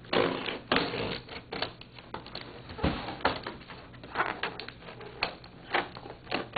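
Small scissors cutting into a cardboard box, a run of irregular crisp snips and cardboard crunches.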